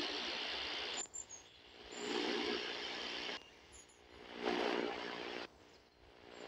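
Static hiss from a Sihuadon R-108 portable receiver being tuned step by step on mediumwave. The sound cuts out abruptly for a moment between steps, three bursts in all. A low buzzing tone sits under the hiss on the second and third.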